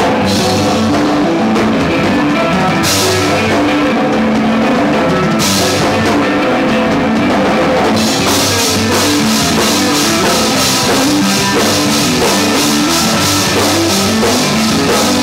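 Live rock band playing an instrumental passage on electric guitar, bass guitar and drum kit. Bright cymbal hits about three and five and a half seconds in, then a steady run of quick cymbal strokes from about eight seconds in.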